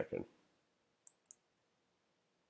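Two short, sharp clicks of a computer mouse button, about a quarter of a second apart.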